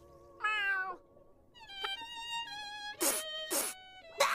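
A cartoon snail's meow with a wavering pitch, then a violin playing a few slow, held notes. Near the end come two short, sharp noisy bursts about half a second apart.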